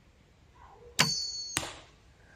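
A Doom Armageddon crossbow fires with a sharp snap, and the whistling arrowhead gives a steady high whistle in flight for about half a second. A second crack follows as the arrow strikes the target.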